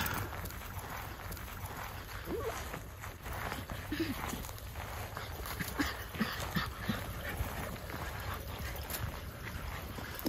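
Miniature schnauzers giving a few short, faint whimpers and yips while they run and play, spread out over several seconds against a low steady rumble.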